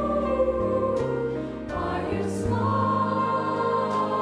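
Mixed high school choir singing in harmony, holding slow sustained chords that change every second or so, with faint sibilant 's' sounds on the words.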